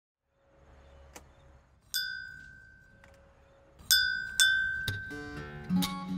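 A small bell struck three times, each strike ringing on with a clear tone that slowly fades; the last two strikes come close together. Acoustic guitar music starts near the end.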